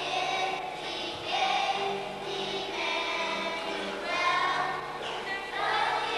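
A children's choir singing, in phrases of held notes.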